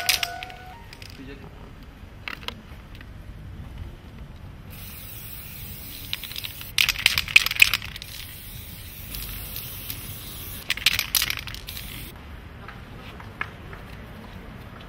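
Aerosol spray paint can hissing as white paint is sprayed through a stencil, starting about five seconds in and lasting about seven seconds, with two louder spurts.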